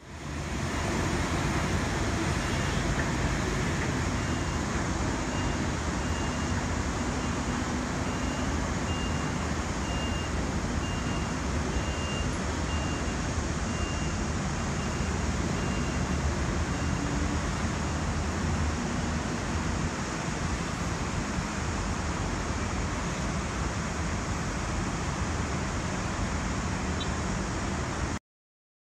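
Continuous city traffic noise, a steady rumble and hiss of road traffic that fades in at the start and cuts off at the end. A faint high beep repeats about once a second through the first half.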